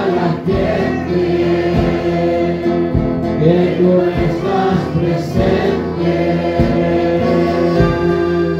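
A church congregation singing a praise and worship song together, led by a man singing into a microphone. Held notes ride over amplified accompaniment with a steady low beat a little slower than once a second.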